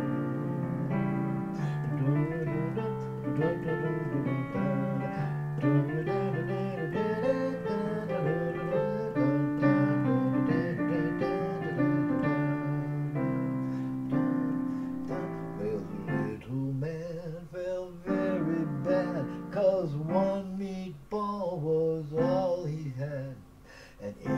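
Digital piano playing an instrumental break of a traditional song. Held chords give way to a busier, more broken-up passage in the last third.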